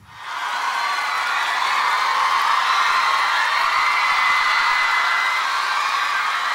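Audience cheering after a song ends. It swells up within the first half second and then holds steady.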